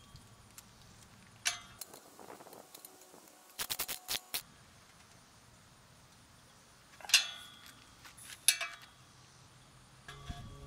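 Metal clinks and knocks from a metal pipe handrail being worked into its pipe fittings on the posts. There is a sharp ringing knock about a second and a half in, a quick run of clicks around four seconds, and two more ringing knocks near the end.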